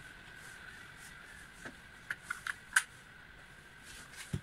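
A few short, sharp clicks and taps from a hand tool and plastic parts being handled in a car's engine bay. About five come close together in the second half, the last the loudest, over a faint steady high-pitched hum.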